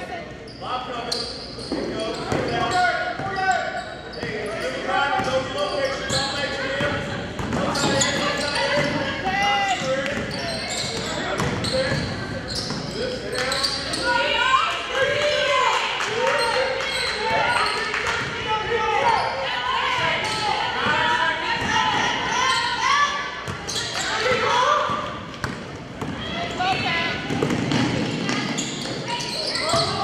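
Basketball dribbled on a hardwood gym floor during play, with a steady run of untranscribed voices from players and coaches throughout.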